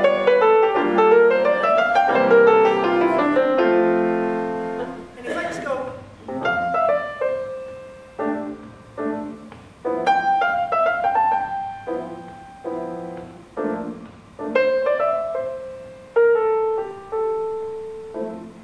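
Steinway grand piano played solo in a jazz style: fast flowing runs for the first few seconds, then spaced-out chords and short phrases that each ring and fade away.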